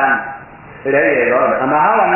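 A man's voice speaking in a drawn-out, chant-like intonation, with a short pause just after the start.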